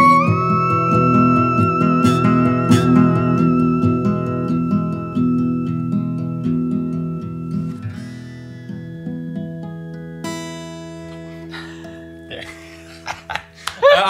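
A theremin and a strummed acoustic guitar play together. The theremin slides up in small steps to a high held note while the guitar strums chords underneath. The theremin drops away about eight seconds in, and the last guitar chord rings on and fades out.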